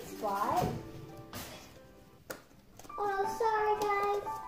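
A young girl's high, sliding play-voice, then a pause broken by a couple of light knocks, then a sung tune of held notes starting about three seconds in.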